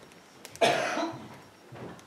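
A single loud cough about half a second in, followed near the end by a softer throat-clearing sound.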